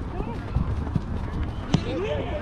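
Outdoor soccer game sound: a steady low rumble of wind and handling on the camera's microphone, with players shouting faintly in the distance. About three-quarters of the way in comes one sharp knock of a football being struck.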